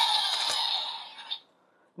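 Electronic sound effect from a DX Evol Driver toy's speaker, a noisy hiss fading out over about a second and a half before it cuts off.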